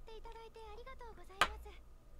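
Subtitled anime dialogue playing at low volume: a high voice speaking Japanese, with a single sharp click about one and a half seconds in.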